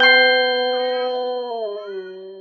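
A Rottweiler howling one long, steady note that slides down in pitch near the end. A bright, bell-like ding rings out at the start.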